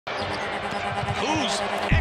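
Basketball being dribbled on a hardwood court amid arena crowd noise and squeaks, as heard on a TV game broadcast. A heavy bass music beat cuts in just at the end.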